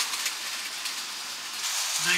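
Hornby O gauge model train running on tinplate track, giving a steady hiss that fades over the first second as it moves away.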